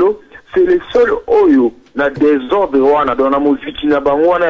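Speech only: a person talking steadily, sounding narrow and thin as if over a telephone line.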